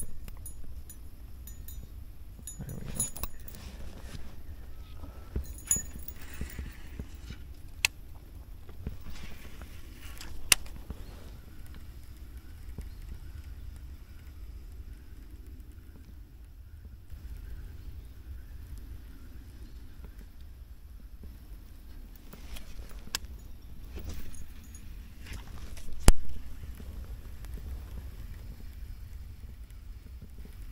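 Fishing tackle handled in a kayak: light metallic clinks as a skirted bladed lure is straightened by hand, then scattered clicks and knocks from the rod, reel and hull, the loudest a sharp knock near the end, over a steady low rumble.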